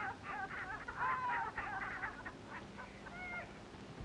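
People laughing at a joke: a run of short, choppy laughs that thins out and fades over the few seconds.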